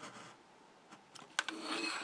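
A craft knife scraping through patterned paper along a metal ruler, ending just after the start. After a quiet moment, a couple of sharp clicks and light rustling follow as the ruler and knife are lifted from the mat.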